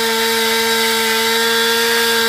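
Chainsaw running at a steady high speed while carving into wood, its pitch holding level.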